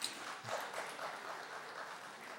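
Faint audience reaction in a hall: scattered hand claps and murmured laughter.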